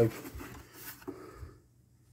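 Paper shipping label being torn and scraped off a cardboard mailing box: a few short rasping rips that stop about a second and a half in.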